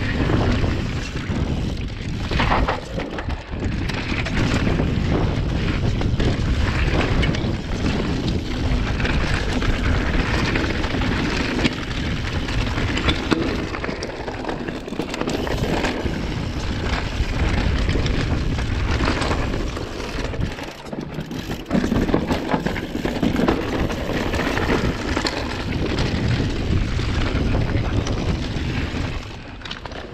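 Wind rushing over an action camera's microphone as a mountain bike descends a loose dirt and gravel trail, with tyres crunching over stones and the bike clattering and rattling over bumps throughout.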